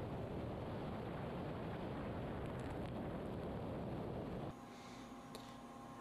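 Flood coolant spraying inside the enclosure of a Mori Seiki horizontal machining center while a 6061 aluminum part is milled: a steady, water-like wash with no clear tool tone. About four and a half seconds in it gives way to a quieter, steady hum.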